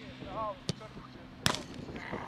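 A football kicked hard, then about three-quarters of a second later a louder bang with a short ring as the ball strikes the board-covered goal.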